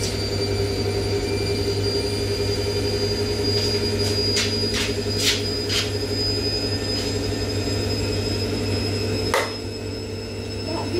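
Front-loading washing machine running with its drum turning: a steady hum under a high whine that rises slowly, with a few short knocks from the drum, most of them around the middle and one near the end.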